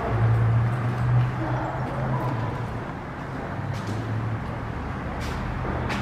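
Steady low rumble of road traffic below an enclosed pedestrian bridge, heard through its glass walls.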